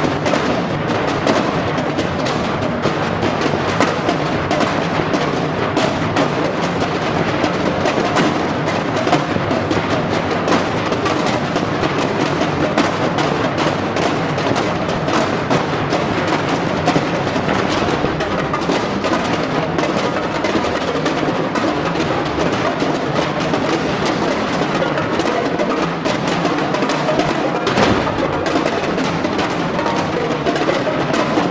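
Percussion ensemble playing timpani, drums and mallet instruments together: a dense, continuous stream of struck notes and drum strokes at a steady loudness.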